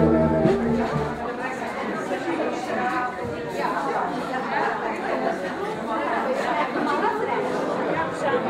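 Music fades out about a second in, leaving the chatter of many people talking at once in a large room.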